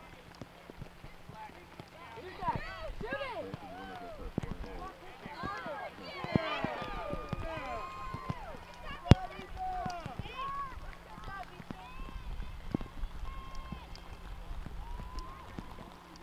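Voices calling and shouting across a soccer field, with many short, high calls bunched between about two and eleven seconds in and a few more near the end. One sharp knock about nine seconds in is the loudest sound.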